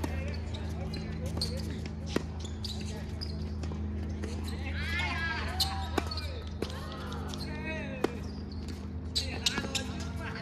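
Tennis ball hit back and forth with rackets in a doubles rally on a hard court: a few sharp, separate pops of ball on strings, spaced one and a half to four seconds apart. Voices are heard in the middle.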